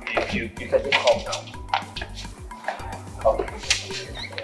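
Background film music with a low, shifting bass line, overlaid with sharp, irregular clicks and clinks.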